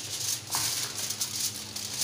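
Aluminium kitchen foil crinkling and rustling as it is handled and a marinated leg of lamb is settled onto it, in a string of quick crackles.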